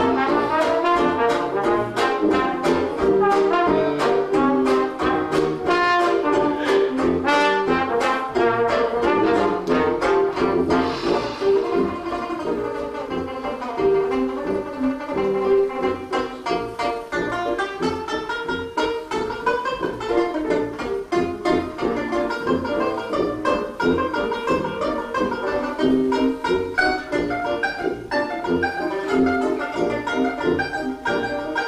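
A live 1920s-style hot-jazz band playing an instrumental passage. A cornet and a trombone lead over a strummed banjo and a sousaphone bass. About twelve seconds in, the band plays more quietly for a while before building back up.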